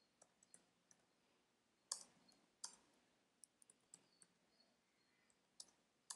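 Faint, sparse clicking of computer keyboard keys as code is typed, with two louder key presses about two seconds in.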